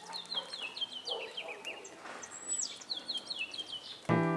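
A songbird singing: a quick run of short high chirps stepping down in pitch, a single higher drawn-out whistle about halfway through, then another run of chirps.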